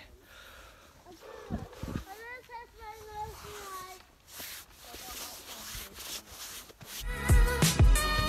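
Wind and clothing rubbing against a handheld microphone during a walk, with faint distant voices. About seven seconds in, loud background music with a steady bass beat begins.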